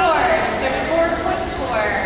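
People's voices talking.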